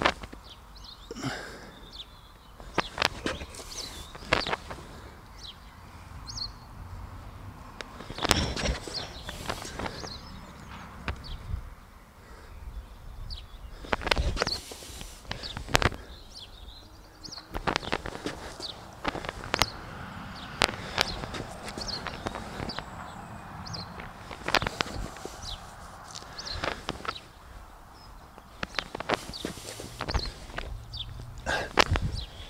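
Scattered soft knocks and rustles from a gardener shifting on a wooden plank while sowing seeds by hand into soil, with birds chirping now and then in the background.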